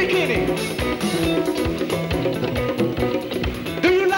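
A live Congolese soukous band playing: electric guitar lines over bass guitar and a drum kit keeping a steady dance beat. A singing voice comes in near the end.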